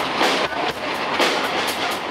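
Live rock band playing loud and dense: drum kit with regular cymbal and snare hits over a wash of electric guitars and bass.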